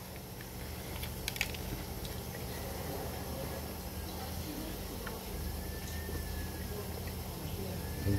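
Man biting into and chewing a burger close to the microphone, a few soft mouth clicks about a second in, over a steady low hum.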